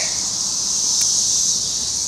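Cicadas buzzing in chorus, a steady high-pitched drone.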